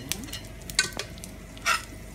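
A slotted spatula stirring dried red chillies, green chillies and dal frying in oil in a pan: a steady sizzle with a few sharp scrapes and clicks against the pan, the loudest about a second in and again near the end.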